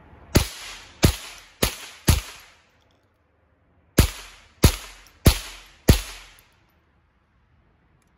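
Rossi RS22 semi-automatic .22 LR rifle firing eight shots in two quick strings of four, roughly half a second apart, with a pause of nearly two seconds between the strings. Each shot is a sharp crack with a short echoing tail.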